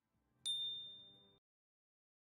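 A single bright notification-bell 'ding' sound effect, played with the bell icon of a subscribe-button overlay. It is struck about half a second in and rings out, fading away within a second.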